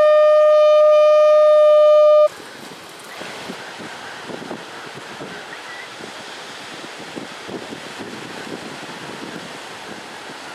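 A blown horn sounding one long, steady, loud note that cuts off suddenly about two seconds in. It is followed by surf and wind noise on the microphone, with scattered small knocks.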